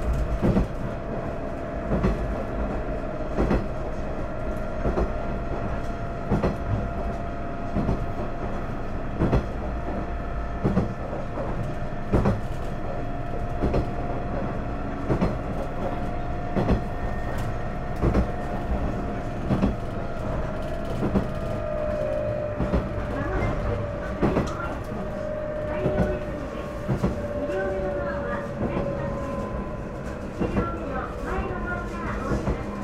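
KiHa 110 series diesel railcar running, heard from inside the car. Its wheels click over rail joints about every second and a half under a steady rumble and a steady whine, and the whine drops slightly in pitch after about twenty seconds.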